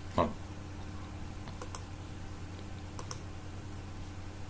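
Two pairs of sharp computer-keyboard clicks, about a second and a half apart, as the presentation slide is advanced, over a steady low electrical hum. A brief vocal murmur comes just at the start.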